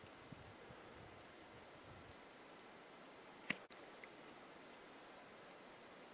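Near silence: a faint steady hiss, broken by one short sharp click about three and a half seconds in.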